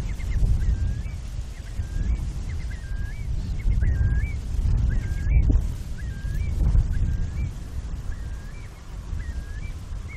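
A bird calling over and over, short rising-and-falling calls about one or two a second, over a loud, unsteady low rumble.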